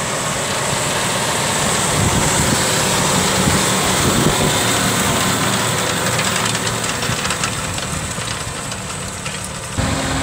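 John Deere 6215R tractor's six-cylinder diesel engine working under load as it pulls a cultivator past close by. It is loudest about four seconds in and then eases off, and the sound changes abruptly just before the end.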